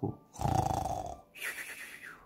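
A man imitating snoring with his voice: a rough, rattling inhale, then a hissing exhale.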